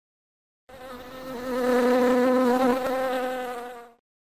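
Insect buzzing sound effect, like a bee or fly, as a single steady, slightly wavering buzz. It swells in after a moment's silence and fades away near the end, as if flying past.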